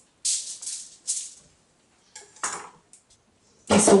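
Aluminium foil crinkling in several short, irregular bursts as it is handled and folded.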